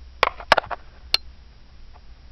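A handful of sharp clicks and taps, about five in the first second: handling noise from fingers working a necklace and its clasp right up against the camera.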